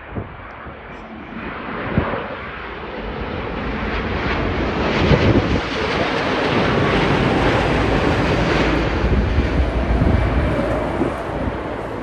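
Boeing 787 airliner passing close on its landing approach: the rush and rumble of its jet engines builds over the first few seconds, stays loud through the middle, then eases slightly near the end, with a thin high steady whine above it.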